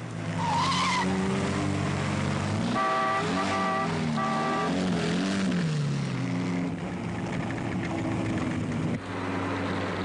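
Porsche 356's air-cooled flat-four engine running hard, its pitch rising and falling through gear changes, with a brief tyre squeal about half a second in. Three short toots of the car horn sound between about three and four and a half seconds in.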